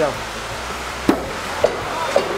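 Thrown knife striking a wooden target with a sharp thunk about a second in, followed by a second, shorter knock about half a second later.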